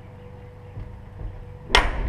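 A steel pickup cab door shutting with one loud slam near the end, after a stretch of quiet room tone with a faint steady hum.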